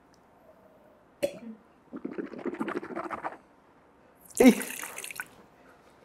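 A drink being sipped through a straw from a glass: a light click, then a second-long run of gurgling sips. Near the end comes a loud breathy exclamation, "Ay!"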